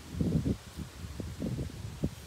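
Low rumbling handling and wind noise on the microphone, with a few faint ticks.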